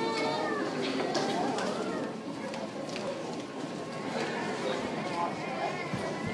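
Indistinct voices talking off-microphone in a large hall, with a few scattered clicks of footsteps on a hard floor.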